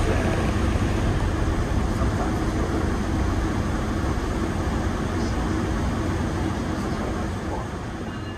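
Steady rumble and noise of a train running, with a low hum underneath.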